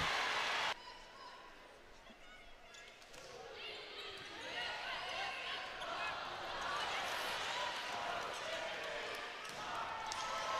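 A short burst of crowd noise cut off abruptly, then about two seconds of near silence. After that come faint indoor court sounds of a volleyball rally: sneakers squeaking on the hardwood floor, ball contacts and a low crowd murmur in the arena.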